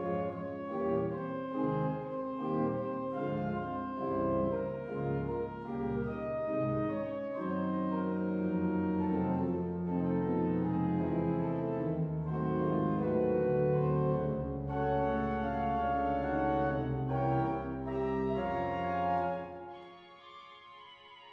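Large pipe organ playing a dense, many-voiced passage with held chords; deep pedal bass notes come in about a third of the way through. Near the end the playing stops and the hall's reverberation dies away.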